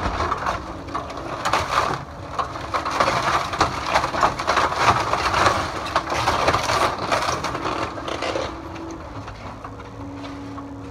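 Weathered wooden timbers of an old corn crib cracking and splintering as a Cat 308E2 mini excavator's bucket crushes them, a dense run of snaps that eases off about a second before the end. The excavator's engine hums steadily underneath.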